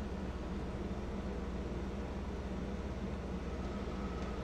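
Steady low hum under faint hiss, unchanging throughout: background room tone picked up by the microphone in a pause with no speech.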